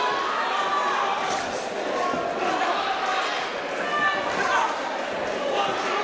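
Spectators in a large, echoing hall shouting and chattering at an amateur boxing bout, with a few dull thuds from the ring.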